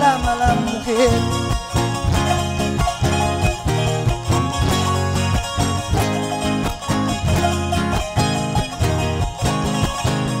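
Live Andean folk music: a charango and guitar strumming an instrumental passage over a low bass line, with the last held sung note fading out about a second in.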